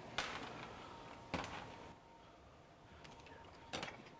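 Three faint knocks and clinks of steel being handled: a short bar of rebar lifted out of a cast-iron bench vise and a cordless compact band saw set down on a steel-topped workbench. The knocks come just after the start, about a second in, and near the end.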